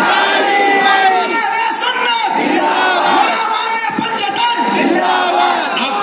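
Large crowd of men shouting together, many voices at once and overlapping, with raised arms.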